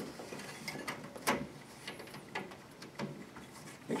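Handling noise as a rubber gasket is stretched and pressed around the rim of an LED retrofit light module: scattered light clicks and knocks, the sharpest about a second in.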